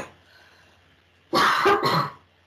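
A woman coughing loudly, a quick burst of coughs starting about a second and a half in, from a throat irritation that is costing her her voice.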